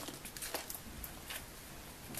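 Faint handling noise: a few light ticks and a soft rustle, as of small objects and paper being picked up.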